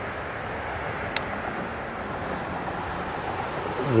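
Steady hiss of road traffic, with a single light click about a second in.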